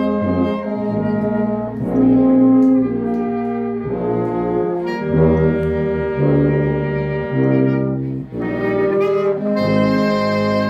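Small mixed ensemble of two violins, clarinet, trombone and tubas playing a piece together in held chords that change every second or so, with a short break about eight seconds in before the next chord.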